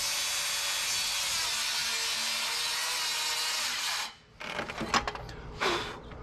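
Makita 40V XGT cordless circular saw cutting through a stack of framing lumber, a steady noise that cuts off suddenly about four seconds in. A few short knocks follow.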